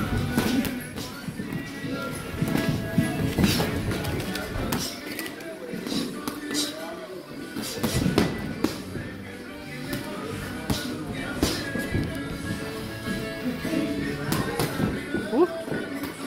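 Boxing gloves landing on gloves and padded headgear during sparring: irregular sharp slaps and thuds, with shoes shuffling on the ring canvas, over background music.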